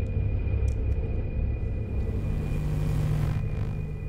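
A deep, steady rumbling drone with a thin, high-pitched tone held over it. A swell of hiss rises about two seconds in and dies away a little more than a second later.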